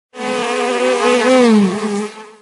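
Buzzing bee sound effect: a loud, wavering drone that starts just after the beginning, dips in pitch near the end and fades away.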